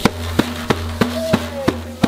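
A child striking a hand frame drum in a steady beat, about three strikes a second.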